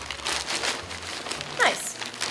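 Large plastic zip-top bag crinkling and rustling as it is held open and handled, with a short falling sound near the end.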